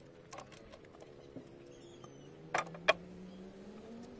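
Two sharp knocks close together a little past the middle, with a few fainter clicks earlier, over a low, steady motor-like hum.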